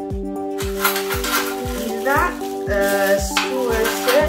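Background music with a steady beat. From about half a second in, plastic wrap crinkles as plastic-wrapped metal barbecue skewers are handled.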